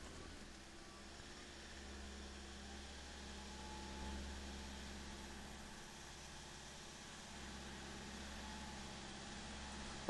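Toyota 1KD 3.0-litre turbo-diesel running under load on a chassis dyno, faint and muffled: a steady low drone held around 2000 rpm as fuel and boost are added, swelling slightly about four seconds in.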